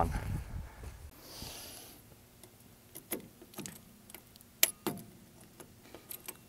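Faint handling of a grease gun's locking coupler being worked onto a recessed grease fitting: a brief rustle about a second in, then scattered small metallic clicks and clinks. The coupler does not lock onto the recessed fitting.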